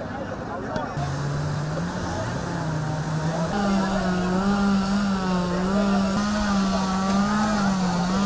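An engine running with a steady hum that wavers slightly in pitch and steps up about three and a half seconds in. Voices are heard at the start.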